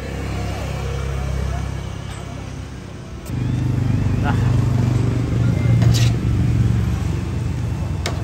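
A motor vehicle engine running close by, a steady low hum that grows louder about three seconds in. A couple of short clicks, from tongs against the steel tray.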